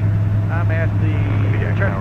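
Steady low drone of the Aerotrek 220's 100-horsepower Rotax four-cylinder engine and propeller in flight, heard from inside the cockpit, with a man's voice talking over it.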